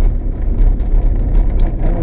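Jeep Gladiator cab noise while driving on a dirt trail: a steady, loud low rumble of tyres and drivetrain, with light rattles and knocks scattered through it.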